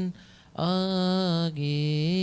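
A solo voice chanting a Coptic liturgical psalm verse in long, held melismatic notes. It pauses briefly for breath near the start, then resumes and sways slightly down in pitch about halfway through.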